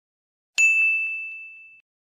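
A single bright electronic ding, the quiz's correct-answer chime marking the right choice, struck about half a second in and fading away over about a second.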